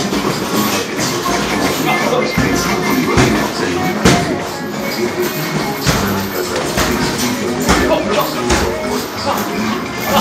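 Music playing, with several sharp knocks scattered through it, about a second apart: boxing gloves landing during sparring.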